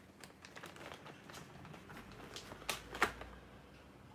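Small crinkles and light clicks from hands handling things on a kitchen counter, with a couple of sharper clicks about three seconds in.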